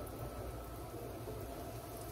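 Floured deer backstrap frying in a skillet: a steady, even sizzle.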